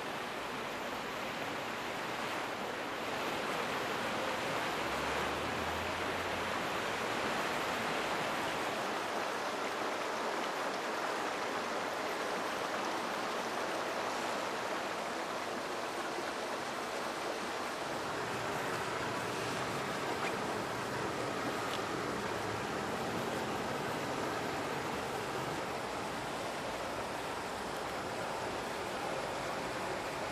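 Steady rush of water falling in a fountain cascade, an even noise that holds unchanged throughout.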